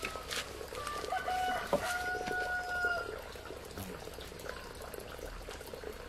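A rooster crowing, one drawn-out crow about a second in that holds a steady pitch for roughly two seconds.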